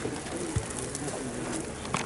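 A bird cooing, a few short low notes over the background.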